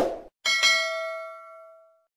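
Notification-bell ding sound effect of a subscribe-button animation. A single bell-like strike comes about half a second in and rings out, fading over about a second and a half. It follows the tail of a short mouse-click sound at the very start.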